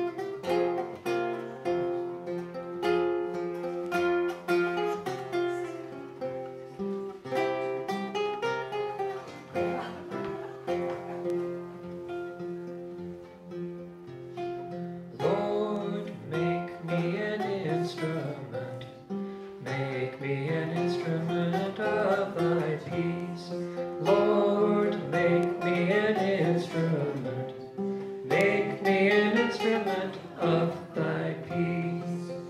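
Plucked acoustic guitar playing a minor-sounding melody in a Byzantine scale. About halfway through, a man's voice joins in, singing over the guitar.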